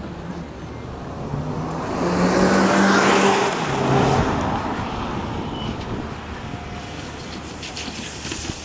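Audi A1 hatchback's engine accelerating through a slalom of plastic barriers: the engine note rises and grows loudest about two to four seconds in, then drops to a lower pitch and eases off, with tyre and road noise underneath.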